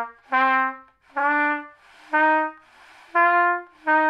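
Trumpet playing about five separate low notes of roughly half a second each, mostly stepping upward in pitch, with breath audible between them. The notes are started with air alone and no tonguing, so their beginnings sound soft and not very clear.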